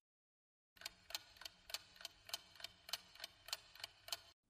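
Faint ticking-clock sound effect counting down a quiz timer: sharp, evenly spaced ticks about three a second, starting just under a second in.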